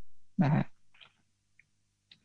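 A man's voice saying a brief spoken particle, "na ha", about half a second in, followed by near silence in a pause of the talk.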